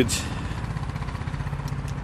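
A steady low engine hum with a fine even pulse: a vehicle engine idling.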